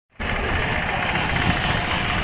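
Single-cylinder engine of a two-wheel hand tractor chugging steadily under load as it pulls a loaded trailer, starting abruptly a moment in.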